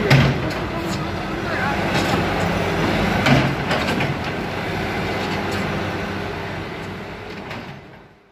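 Diesel engine of an Escorts backhoe loader running steadily during demolition, with two louder knocks, one right at the start and one about three seconds in; the sound fades out near the end.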